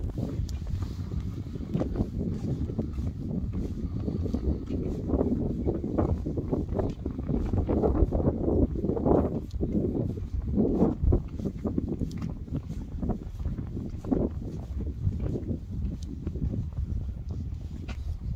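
Wind rumbling on the microphone, with irregular footsteps on the bridge's wooden deck boards.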